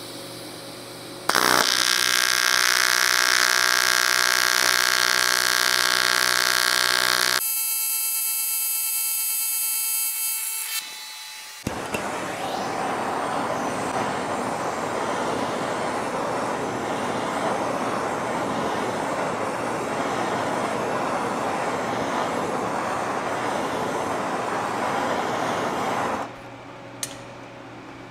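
AC TIG welding arc on aluminum: a loud, steady buzz starts about a second in, thins to a higher whine around seven seconds and stops near eleven seconds. A handheld gas torch then hisses steadily on the aluminum for about fourteen seconds and cuts off near the end.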